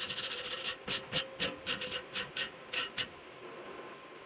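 Steel wire brush scrubbed over a fresh weld bead on steel rebar to clean it, in about ten quick scratchy strokes that stop about three seconds in.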